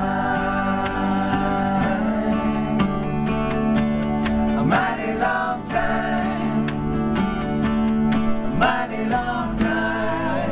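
Live acoustic Americana music: guitars and a small string instrument are strummed in a steady rhythm while several men sing together in harmony.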